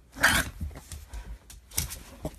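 Small long-haired dog vocalising over a plush toy in two short outbursts, the first and louder just after the start and a second about a second and a half later.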